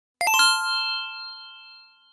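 A bright chime sound effect: a quick run of about four struck notes, then a ring that fades away over about a second and a half.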